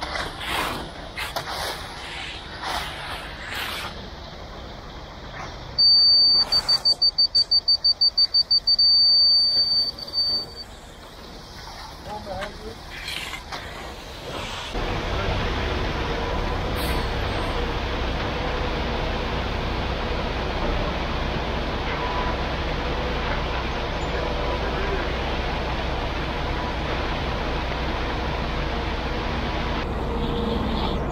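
Hand tool scraping through fresh concrete along a wooden form. A high-pitched electronic beeper then pulses rapidly for about five seconds. About halfway through, a ready-mix concrete truck's engine takes over, running steadily while concrete is placed from its chute.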